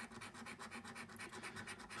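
A coin scratching the scratch-off coating from a scratchcard's winning-numbers panel: faint, quick, even back-and-forth strokes, about ten a second.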